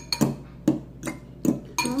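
Metal forks clinking against the bowls as instant noodles are stirred: a run of short, sharp clinks about two a second.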